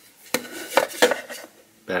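Hard plastic casing of a fake-TV LED light knocking and clattering against a wooden tabletop as it is handled and turned over, about four sharp knocks in the first second and a half.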